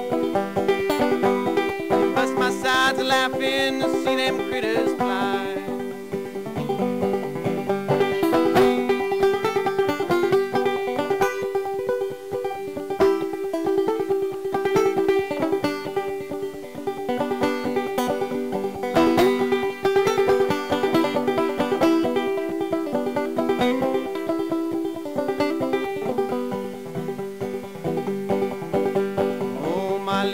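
Banjo played as an instrumental break in an old-time song: quick picked notes over a steady ringing drone note.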